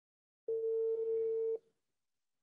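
A single steady electronic beep, a mid-pitched tone about a second long that starts and stops abruptly.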